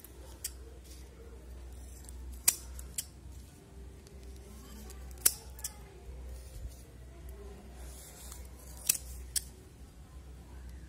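Large rusty scissors snipping through a folded stack of thin plastic carry bags. There are about seven sharp snips, several in quick pairs, over a steady low hum.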